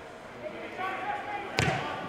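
Faint voices, then a single sharp thud about one and a half seconds in.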